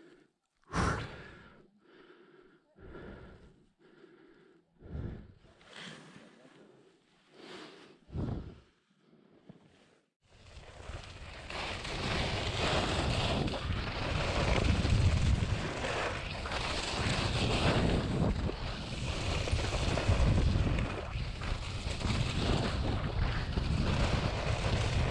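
Downhill skiing heard from an action camera: for about ten seconds, short separate swishes with quiet gaps between, roughly one a second. From about ten seconds in, a continuous loud rush of wind on the microphone with skis running over snow as speed builds.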